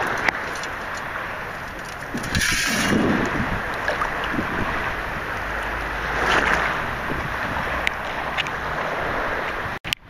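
Wind buffeting the microphone over water sloshing in the shallow surf, swelling louder a couple of times; a brief dropout near the end.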